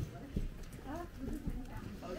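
Nearby people talking among themselves, not addressing the camera, with a few dull knocks, the loudest right at the start.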